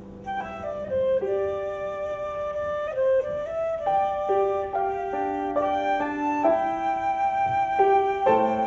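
Concert flute playing a slow melody of held notes, each changing every half second to a second, with a lower part sounding beneath it.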